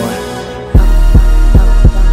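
Background hip hop music; just under a second in, a heavy deep bass and kick drum hits drop in and the track gets much louder.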